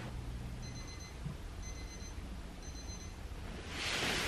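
An alarm beeping three times, about once a second, each beep short and high-pitched, over quiet room tone.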